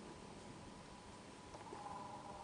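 Faint outdoor background hiss with a thin, steady high tone running through it, a little stronger near the end.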